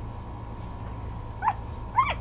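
One-week-old miniature Bordoodle puppy giving two short, high squeaks, about one and a half seconds in and again at the end.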